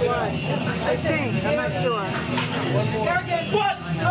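Several spectators shouting encouragement to a lifter over one another, voices overlapping throughout, with a steady low hum underneath.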